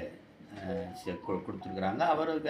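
A man speaking, with a short two-note electronic chime about a second in, the second note slightly lower than the first.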